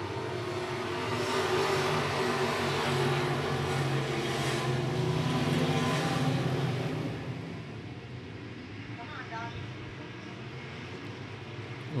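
A field of IMCA Sport Mod race cars' V8 engines accelerating hard together on a restart to green. The pack's engine noise swells for the first six seconds or so, then fades as the cars move away.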